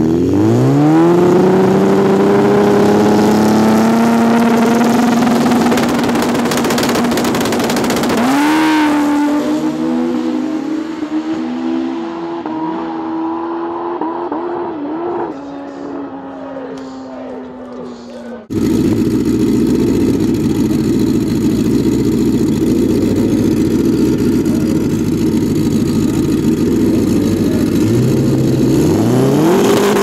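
A Pro Street drag motorcycle engine launches off the line with a fast rising whine, holds a high note that climbs again partway through, and fades as the bike runs away down the strip. Then a second bike's engine runs loud and steady at the starting line and revs up sharply near the end.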